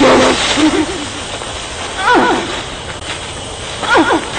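An owl hooting in a film soundtrack: about three rising-and-falling hoots a second or so apart, over a steady hiss of night ambience.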